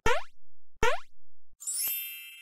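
Cartoonish intro sound effects: two short pops that rise quickly in pitch, one at the start and one just under a second in, then a bright sparkling chime near the end that rings on and slowly fades.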